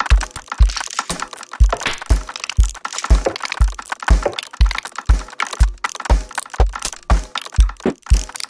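Experimental electronic music made in Ableton and Fmod: a deep kick drum hitting about twice a second in an uneven, lopsided rhythm, under a dense bed of crackling, glitchy clicks.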